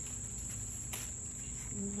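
Insects droning steadily in a continuous high-pitched whine, with one short click about a second in.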